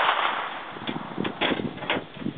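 A 9mm handgun fired several times in quick succession: three or four sharp shots in the second half, the first about a second in. A loud rush of noise fades out over the opening half-second.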